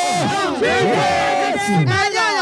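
A large church congregation shouting and crying out together, many voices overlapping at once, with long held and sliding cries.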